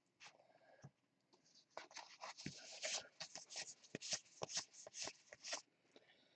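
Faint papery flicks and rustles of a stack of baseball trading cards being slid through by hand, one card after another, about three or four a second from just under two seconds in.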